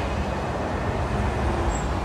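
Steady road traffic noise from a nearby road, a continuous low rumble with no breaks.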